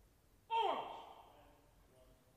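A single loud shouted voice call about half a second in, falling in pitch and ringing on in the echo of a large hall for about a second.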